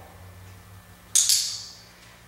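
A brief metallic jingle about a second in, fading out quickly: the tags on a dog's collar clinking as the collar is handled.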